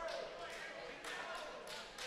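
Quiet gym ambience: faint spectator voices, with a few short slaps and scuffs from heavyweight wrestlers hand-fighting and stepping on the mat.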